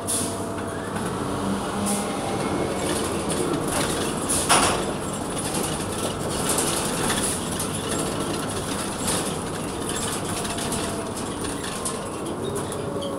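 Cabin noise of a New Flyer XN40 natural-gas transit bus under way: the Cummins Westport ISL-G engine and Allison transmission running steadily under road noise, with frequent rattles of the cabin fittings. A louder, sharper burst of noise about four and a half seconds in.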